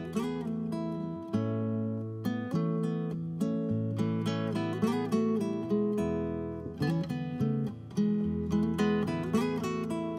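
Recorded country tune on classical guitar: a picked melody over changing bass notes at an even tempo.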